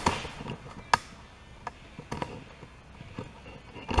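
Handling noise: a few scattered knocks and clicks as equipment is picked up and set back in place, the sharpest about a second in and another near the end.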